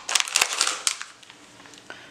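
Crinkling rustle and small clicks of a paper packet of acoustic guitar strings being handled and taken out of a guitar case, mostly in the first second, then quieter with one faint click near the end.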